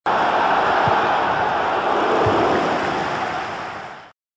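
Steady rushing-noise sound effect for an animated logo intro. It starts suddenly and fades out near the end.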